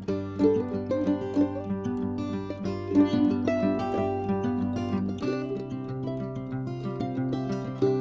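Instrumental background music with plucked strings: a run of quick notes over a bass line that moves to a new note about five seconds in.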